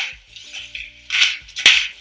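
Hand-held salt grinder turned over a baking tray of pumpkin cubes, giving three short gritty bursts, one at the start, one about a second in and one near the end. Faint background music runs underneath.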